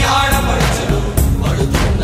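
Background music with a steady beat and strong bass, a voice singing over it.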